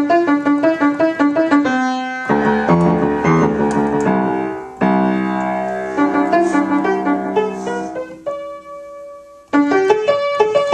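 Piano played four hands: fast repeated treble notes over chords, broken by a briefly held chord about two seconds in. Near the end a chord is left to die away for over a second before the quick playing starts again.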